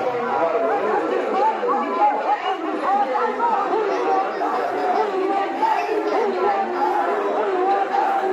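A large crowd of protest marchers, many voices overlapping at once in a dense, steady babble.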